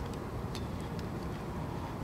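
City transit bus's diesel engine idling, a steady low rumble, with a few faint ticks over it.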